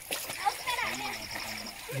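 Water splashing as people bathe in a river, with voices talking and calling over it.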